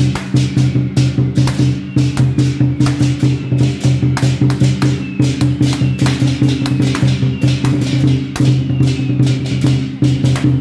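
Temple-procession music for a god-general dance: a fast, uneven run of sharp percussion strikes over steady low sustained tones.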